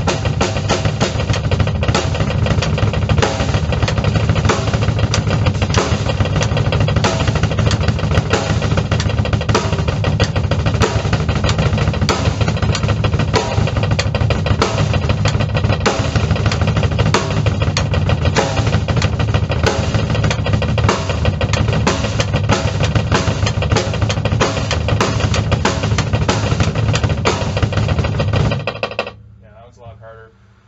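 Bass drum played with a double pedal in a fast, continuous, even stream of strokes, stopping about a second and a half before the end.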